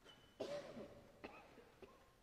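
A single cough about half a second in, dying away in the reverberant stone church, followed by a couple of fainter short noises.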